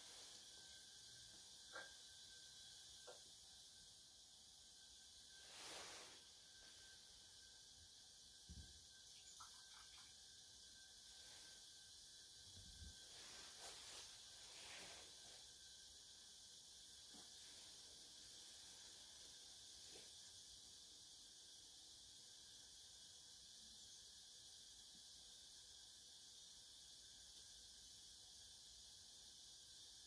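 Near silence: steady room hiss, broken by a few faint clicks and soft brushing sounds of tea utensils being handled.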